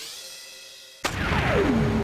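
Synthesized logo-intro sound effects: a swelling tone fading away, then about a second in a sharp hit followed by a falling sweep that settles into a held tone and cuts off suddenly.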